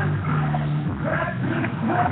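Skateboard wheels rolling across a concrete bowl, a low steady rumble, with music and voices faintly behind it.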